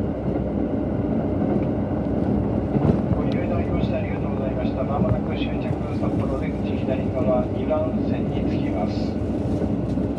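Cabin running noise of a KiHa 183 series diesel express railcar under way: a steady low rumble of engine and wheels on the rails, with indistinct voices talking over it.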